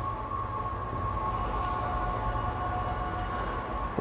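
Steady background noise with a faint, constant high-pitched whine, and no speech.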